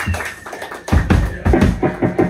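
Drum kit: a quick run of about six low tom and kick hits, starting about a second in.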